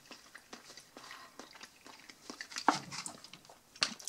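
A mouthful of sausage-and-cheese salad being chewed, with soft wet mouth sounds and small irregular clicks. There is a brief hum near three seconds, and a sharp click of the clear plastic tub and white plastic fork being handled near the end.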